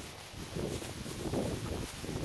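Wind noise on a handheld phone's microphone, with rustling, while the person holding it jogs along carrying a plastic rubbish bag.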